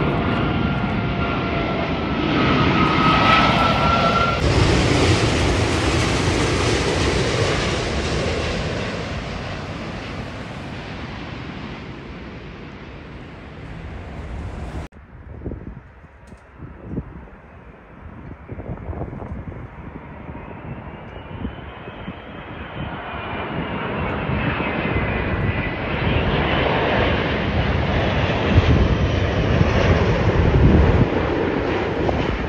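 Airbus A380 four-engine jet on landing approach passing low overhead. Its engine noise, with a steady high whine, fades away over the first dozen seconds. After an abrupt cut about halfway through, another A380's engine whine and rumble build as it approaches, loudest near the end.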